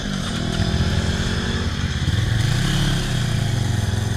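Supermoto motorcycle engines running at a standstill, a low steady note whose revs rise and fall slightly.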